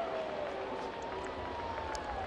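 Ballpark crowd at a steady murmur, with no loud cheer. Faint long drawn-out tones slowly rise and fall over it.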